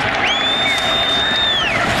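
Stadium crowd noise, a steady roar from the stands during a fourth-down play. A long high whistle rises over it, holds for about a second and a half, then drops away.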